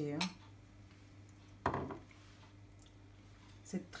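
A spoon clinking lightly against a small glass mixing bowl as a dressing is scooped out to taste, with one louder knock a little before the middle.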